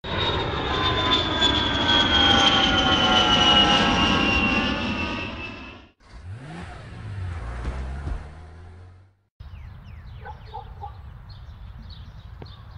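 A jet airliner passing low on its landing approach: the whine of its engines falls slowly in pitch and is loud for about six seconds, then cuts off. A quieter low rumble follows, and after a short gap, near the end, faint outdoor ambience with a few small chirps and clicks.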